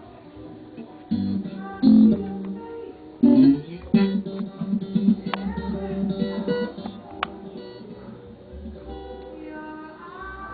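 Red electric guitar with a Stratocaster-style body being played: soft notes at first, then loud struck notes about one, two and three seconds in, followed by a run of quickly picked notes that grows quieter near the end.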